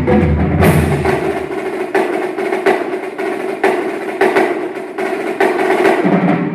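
A marching drumline playing: snare and tenor drums in a quick run of sharp strokes, with bass drums and hand cymbals. The deep bass drum notes stop about a second in, leaving the snares and tenors.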